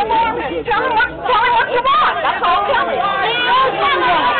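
Several people talking and shouting over one another in a heated argument, their voices overlapping so that no words stand out.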